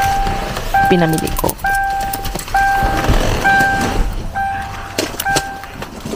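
A car's door-open warning chime, a single steady tone sounding about once a second while the driver's door stands open. A few sharp clicks come near the end.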